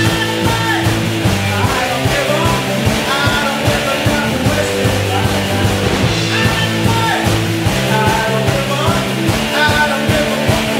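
A rock band playing live: electric guitars, bass guitar and drum kit, with a steady beat throughout.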